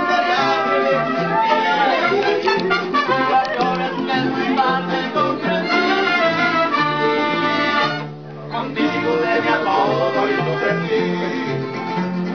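Live mariachi band playing, with trumpets carrying the melody over strummed guitars and a low bass line. The music breaks off briefly about eight seconds in, then carries on.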